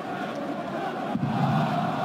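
Stadium crowd noise: a steady din of many voices, swelling a little just over a second in.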